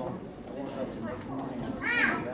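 Several young children's voices talking over one another, with one child's loud, high-pitched cry near the end.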